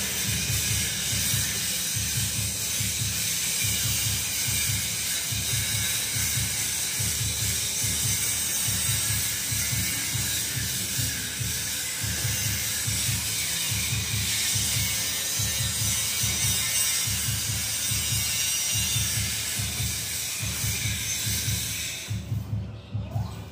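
Stick welding arc crackling and hissing steadily as an electrode is run along a steel truck cage rail. Background music with a steady low beat plays throughout.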